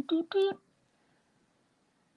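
A woman's voice making three short pitched syllables in the first half second, then quiet room tone.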